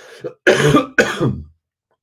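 A man coughing twice with his hand over his mouth: two sharp coughs about half a second apart.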